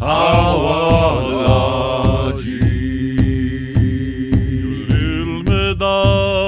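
A chant-like song in an Indigenous language, sung over a steady drum beat of about two beats a second, with longer held notes in the middle.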